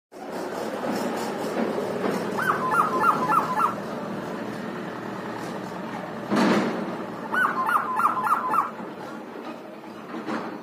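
Common hill myna calling: two matching whistled phrases about five seconds apart, each a rising note followed by four quick repeated notes. A short, loud, harsh burst comes just before the second phrase.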